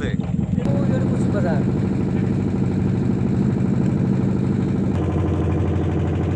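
A wooden river boat's engine running steadily, its note shifting about five seconds in.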